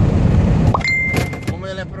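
Truck's onboard tracking terminal sounding a steady high beep for just over half a second, about a second in, after a click, over the steady drone of the truck cab. It is the tracker's overspeed warning, set to trip above 80 km/h.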